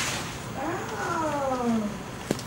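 A single drawn-out vocal call that rises briefly in pitch and then slides slowly down for about a second.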